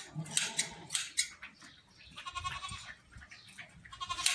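A goat bleats once, briefly, a little past the middle, while hand shears snip several times through long goat hair in the first second or so.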